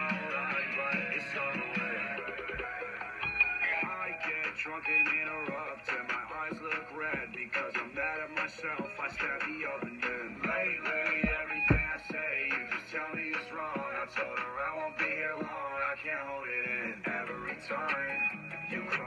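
Recorded rock-leaning pop song playing back: a male singing voice over guitar, with little treble.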